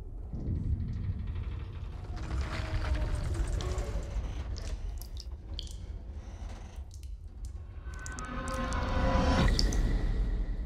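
Film sound design of a deep-sea station under strain: a low rumble with scattered drips of water and groaning, creaking tones that swell near the end.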